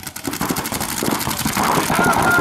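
Several paintball markers firing at once at the breakout, a dense, fast crackle of shots.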